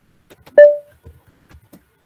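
A single loud electronic beep about half a second in, dying away within a third of a second, with faint computer-keyboard clicks around it.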